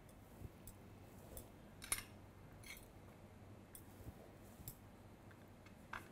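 Near silence broken by a few faint, light clicks of a metal utensil against a serving tray, the sharpest about two seconds in.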